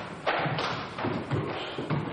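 Full-contact Kyokushin karate strikes, bare-knuckle punches and kicks, landing on a fighter's body: about four impacts in two seconds.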